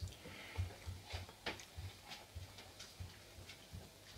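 Faint mouth and handling sounds of a person sipping whisky from a nosing glass held at the lips: soft, irregular low thumps a few times a second with a few light clicks.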